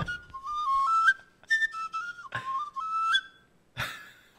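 A high, whistle-like melody played in short phrases of stepped notes, with a couple of brief noisy hits between the phrases.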